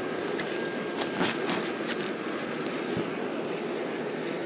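Steady whirring of a Christmas inflatable's blower fan close to the microphone, with a few brief rustles and clicks between about one and two seconds in.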